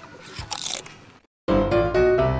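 Crunching, munching eating sound from an interactive baby doll fed a toy cookie, lasting about a second. After a brief silence, bright children's background music starts about one and a half seconds in.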